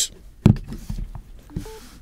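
A Samsung Galaxy Note 10 phone in a clear case is set down on a wireless charging pad with a thump about half a second in. About 1.6 s in comes a short electronic beep, the phone's tone that wireless charging has started.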